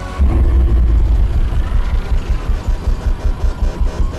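Honda road-racing motorcycle engine running, a loud low throb that starts suddenly and pulses about four times a second.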